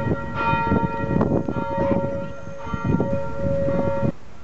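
Church bells ringing, struck again and again so their tones overlap and hang on.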